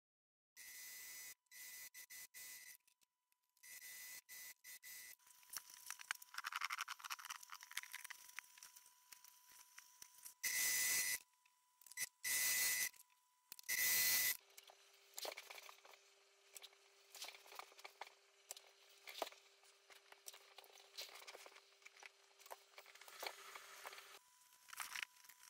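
Domestic electric sewing machine stitching cotton gingham in short runs, starting and stopping, several runs of about a second each, the loudest three near the middle. After that come quieter scattered clicks and rustles of fabric being handled, over a faint steady hum.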